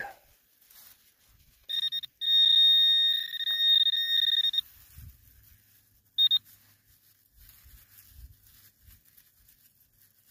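Metal detector pinpointer sounding a steady high electronic tone for about three seconds, with one short break, then a brief beep a little later: it is signalling a metal target in the soil plug.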